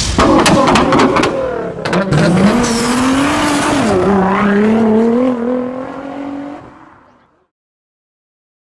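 Logo-animation sound effects: a quick run of sharp clicks and hits, then a car engine revving up, dipping and climbing again before fading out about seven seconds in.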